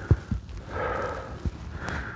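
A person breathing out audibly close to the microphone, a breathy exhale about half a second long in the middle, with a few short low thumps.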